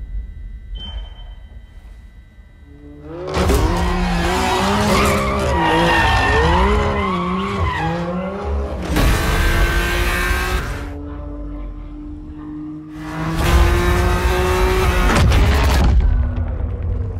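Race car on a track, its engine revving up and down repeatedly as it drifts, with tyre squeal and bursts of rushing tyre and exhaust noise, over a music bed. The engine's pitch climbs slowly in a held pull before a second burst near the end.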